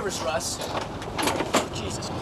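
Indistinct voices with a few sharp clicks or knocks, over a faint low hum.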